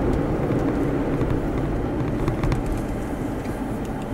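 Steady engine and road noise inside a moving car's cabin, with a couple of faint ticks about halfway through.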